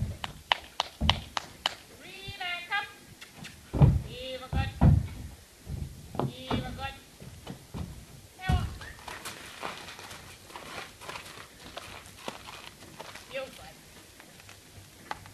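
A pony's hooves knocking and thudding on a horse trailer's ramp and floor, a string of irregular knocks with heavier thuds about four, five and eight and a half seconds in. Several short wavering calls sound among the knocks in the first half.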